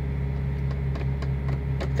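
Steady low mechanical hum, with a few faint ticks.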